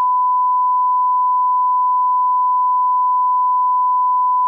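A 1 kHz reference test tone, the steady sine-wave beep that goes with television colour bars, held at one pitch and level without a break.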